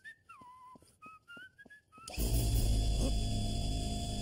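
Cartoon soundtrack: a short whistled phrase of sliding notes over light ticks. About halfway in, a much louder, low, steady noise cuts in and holds.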